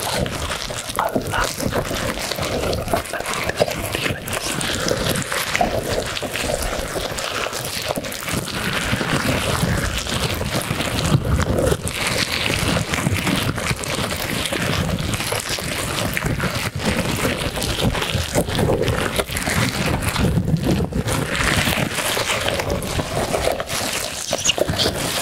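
A beaded squishy ball with rubbery tendrils squeezed and rubbed in both hands close to a microphone: a continuous crackly rustling and rubbing with no pause.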